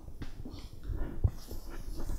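Chalkboard eraser rubbing across a chalkboard in short strokes, wiping off chalk writing, with a soft low knock about a second in.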